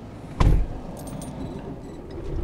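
Inside a semi truck's cab with the engine idling low, a single heavy thump about half a second in, followed by a few light clicks and rattles.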